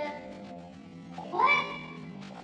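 Background music with a steady low tone, and about a second and a quarter in, a single meow that rises and then holds briefly.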